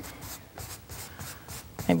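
A wide flat paintbrush loaded with titanium white rubbing over a wet, pre-coated stretched canvas in quick, repeated short strokes.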